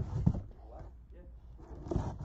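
A cardboard box knocked down on a table with a sharp thump and a couple of lighter knocks, then a knife scraping at the box's seal near the end.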